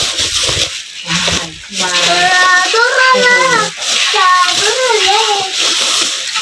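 Thin plastic carrier bags rustling and crinkling as hands dig through them. From about two seconds in, a child's voice joins in long, wavering tones without clear words.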